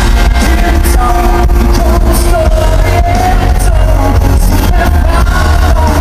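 Live male vocal sung over a strummed acoustic guitar through a concert PA in a large hall, with a heavy low boom beneath.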